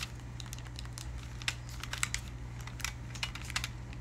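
Nintendo Switch buttons being pressed by hand: scattered, irregular clicks over a steady low hum.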